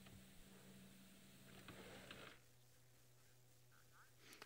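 Near silence: a faint steady hum and hiss, dropping slightly quieter a little over two seconds in.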